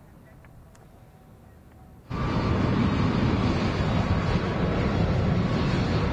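Jet airliner engine noise, a loud dense rumble with a faint steady whine, starting abruptly about two seconds in after only faint background hiss.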